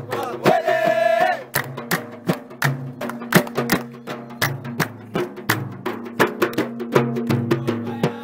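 Nubian wedding band music: a male voice sings a short phrase, then from about a second and a half in, large hand-beaten frame drums play a dense, fast rhythm over a low steady note.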